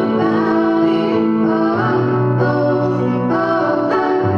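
A woman and a girl singing a duet into microphones over a karaoke backing track, holding long, sustained notes at a steady level.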